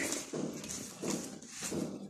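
Close-up wet chewing and lip-smacking of a mouthful of rice and curry eaten by hand, a steady run of chews about two or three a second.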